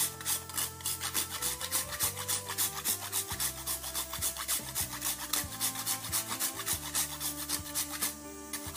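Whole nutmeg rubbed back and forth on a flat stainless-steel rasp grater, a dry scraping in quick, even strokes, about five a second.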